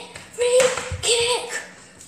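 A child's voice giving two held, high-pitched wordless shouts, each dropping at the end, with a short low thud about a second in.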